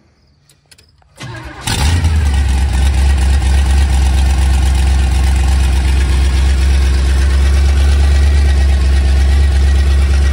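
Small-block Chevy 350 V8 with a tunnel ram and two four-barrel carburettors starting: it catches about a second and a half in. It then runs loud and steady at idle.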